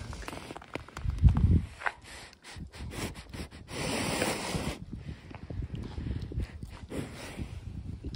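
A young Shorthorn sniffing and nosing at the phone close up, its breath snuffling into the microphone. Its muzzle bumps and rubs against the phone about a second in, and there is a long exhale about four seconds in.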